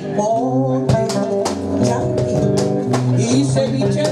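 Live Afro-Peruvian criollo music: two acoustic guitars playing with a cajón beating a steady rhythm, and a woman's voice singing.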